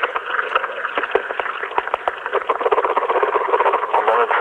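Tinny, radio-like sampled recording with no clear words: crackly noise and scattered clicks squeezed into a narrow, telephone-like band. It comes from the found-sound layer of an industrial track.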